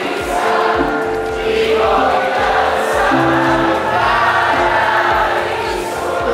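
Live pop band music played loud, with a large crowd singing along to the song and a steady drum beat underneath.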